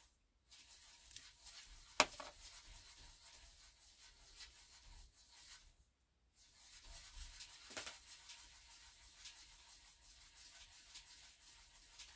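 Faint rubbing and handling noise of a small plastic RC shock absorber being worked by hand, its cartridge screwed tight during bleeding, with a sharp click about two seconds in and a softer one a few seconds later.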